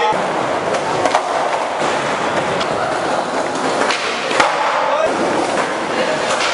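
Skateboard wheels rolling over a tiled concrete floor, with several sharp clacks of the board, the loudest a little past four seconds in.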